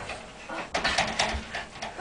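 Scuffling on a mattress and bedding as two people grapple: rustling with a few soft knocks about a second in.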